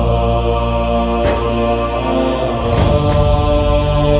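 Islamic devotional chant (nasheed) as background music: held, droning chanted tones with a soft beat about every second and a half.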